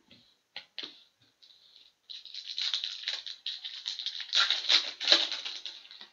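Foil wrapper of a trading card pack being torn open and crinkled by hand: a few light crackles at first, then from about two seconds in a dense, loud crinkling that lasts nearly four seconds.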